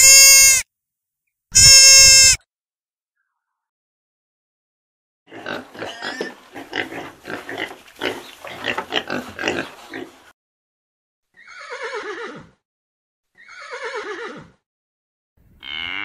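A string of farm-animal sounds: two short, loud calls at a steady pitch, then about five seconds of a pig grunting as it roots its snout in mud, then two calls that fall in pitch. A cow begins to moo at the very end.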